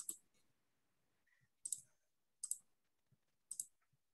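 Computer mouse button clicking: a few short, sharp clicks about a second apart over otherwise near silence.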